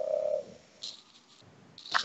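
The tail of a drawn-out hesitation "uh" from a speaking voice, fading out about half a second in, followed by a brief faint hiss near one second and then quiet.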